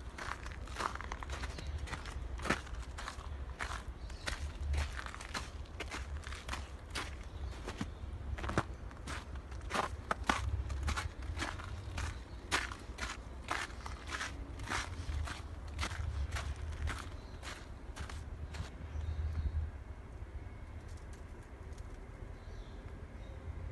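Footsteps of a person walking on snow, a steady pace of about two steps a second, stopping shortly before the end, over a low steady rumble.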